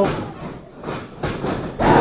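A wrestler slamming onto the ring canvas from a shoulder tackle: a few softer knocks, then a heavy thud near the end.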